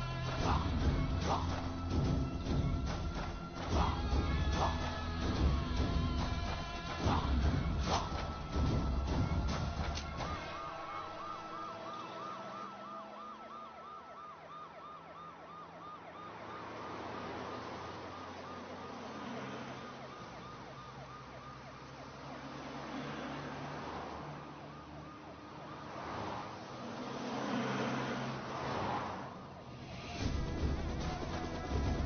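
Dramatic film background music with a heavy beat. About a third of the way in the beat drops away and a police car siren takes over, warbling rapidly for several seconds over quieter music.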